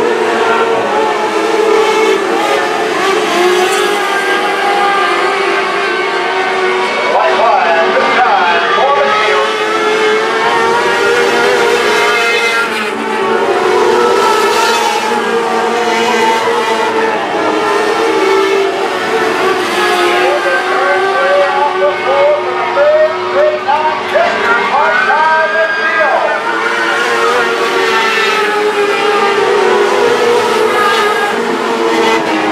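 A pack of modlite race cars running laps on a dirt oval, several engines at high revs, their pitch rising and falling as they go through the turns and down the straights.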